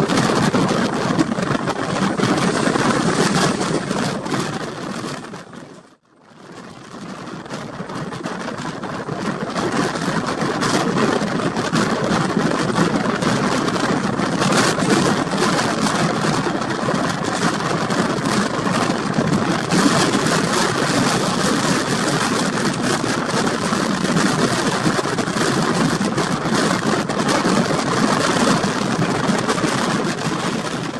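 Running noise of a moving passenger train heard from an open coach doorway: steady wheel-on-rail rumble mixed with rushing wind. The sound fades out to near silence about six seconds in, then fades back up.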